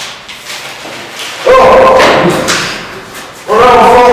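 A young man's loud, drawn-out yells, one about a second and a half in and another near the end, with thumps as he tumbles down a flight of stairs.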